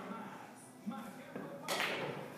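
Quiet pool-hall room sound with a brief fragment of a man's voice about a second in and a short noisy rush near the end; no ball strike is heard.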